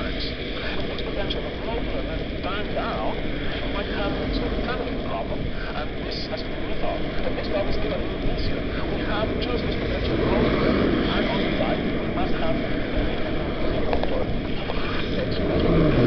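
Steady wind rush and wet-road noise of riding along a street in the rain, with traffic passing alongside. It swells about ten seconds in and again near the end.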